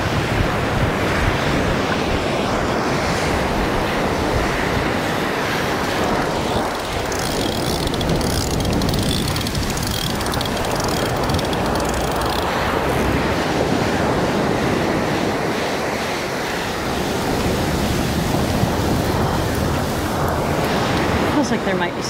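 Ocean surf breaking on the beach with wind rushing on the microphone, a steady, even noise.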